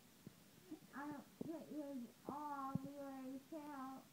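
A young woman's voice, groggy after wisdom-tooth extraction, making sing-song, drawn-out sounds with no clear words. It starts about a second in and has several long held notes.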